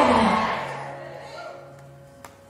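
Loud worship music with congregation voices fading out over the first second or so, leaving a faint held low note.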